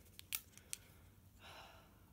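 A few faint clicks and taps from a Too Faced eyeshadow palette compact being handled and turned over in the hands, the sharpest about a third of a second in.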